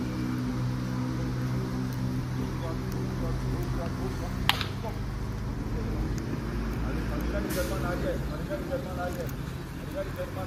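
Voices of a football team at an outdoor warm-up, indistinct calls and chatter over a steady low hum. A single sharp click comes about four and a half seconds in.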